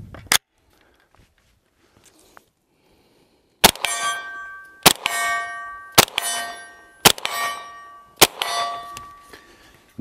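Five shots from a 9mm CZ Scorpion EVO 3 S1 carbine, about a second apart, starting a third of the way in. Each shot is followed by the bell-like ring of the hit steel target, fading over about a second. The carbine cycles through all five without a stoppage.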